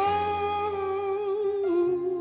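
A singer holding one long note on the word "all", with a slight vibrato and a small step down in pitch near the end, over a sustained keyboard chord.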